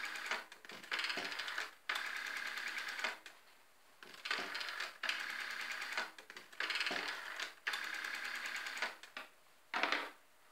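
Rotary dial of a black telephone being dialled digit after digit: each return of the dial is a whirring run of fast clicks lasting about a second, heard about eight times with short pauses between. A louder clunk from the handset comes just before the end.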